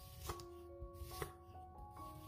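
Chef's knife slicing a peeled onion on a wooden cutting board: a few crisp cuts, the clearest about a second in. Soft background music with held notes plays underneath.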